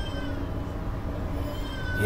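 Interior running noise of a Class 350 electric multiple unit in motion: a steady low rumble from the carriage, with two brief high whining tones, one at the start and one near the end.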